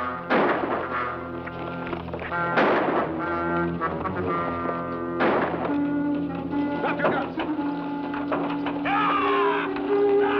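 Dramatic orchestral TV-Western score playing, with three loud sharp hits about two and a half seconds apart in the first half and a wavering high sound near the end.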